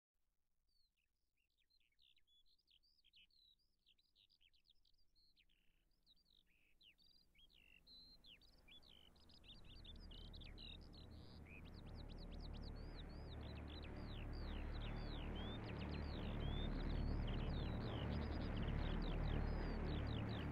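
Birds chirping, many short quick calls, while a low rumbling noise fades in from about halfway and grows steadily louder.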